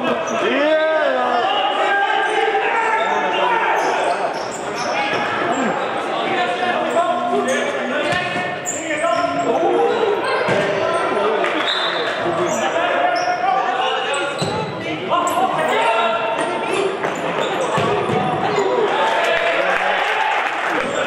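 Futsal ball being kicked and bouncing on a wooden sports-hall floor, with players' shouts echoing through the hall.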